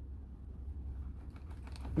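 A knife cutting through a garden hose just below its end fitting: faint scraping with small clicks, over a steady low hum.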